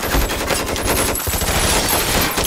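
Rapid gunfire: dense bursts of shots, many a second, close together.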